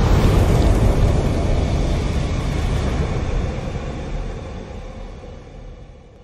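The rumbling tail of a fiery explosion sound effect in an animated logo intro, a dense low rumble that dies away steadily over several seconds.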